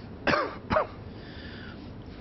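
A person coughing twice in quick succession, two short coughs about half a second apart.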